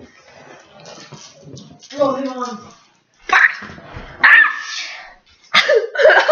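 Teenage boys' voices making non-word sounds in reaction to a foul-tasting jelly bean: a wavering groan about two seconds in, then several loud, sharp noisy bursts of breath and voice.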